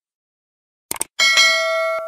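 A quick double mouse click, then a bright bell ding that rings on and slowly fades: the sound effects of a subscribe-button click and notification bell.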